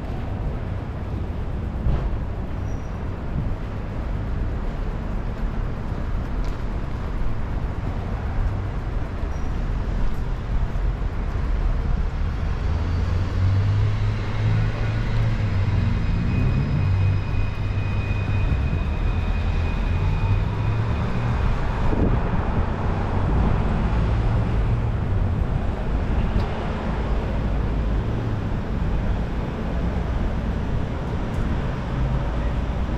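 City street traffic: a steady low rumble of vehicles, swelling for much of the middle as a heavy vehicle's engine passes close. There is a rising whine near the end of that stretch.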